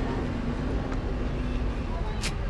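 Low steady rumble of city buses running at a bus station, with a faint steady engine hum.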